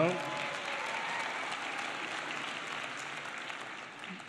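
Audience applauding, the clapping tapering off near the end.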